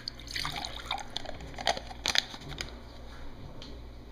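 Water being poured into a glass measuring cup, splashing and trickling unevenly for about two seconds, then tapering off to a few drips.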